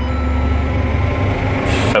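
CLAAS Axion 830 tractor engine running steadily under load, heard from inside the cab, with a brief hiss near the end.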